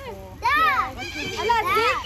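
Young children's high-pitched voices crying out twice, each call rising and falling in pitch, over lower chatter.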